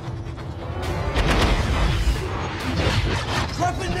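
Film soundtrack: dramatic score music mixed with heavy rumbling and booming effects that grow louder about a second in.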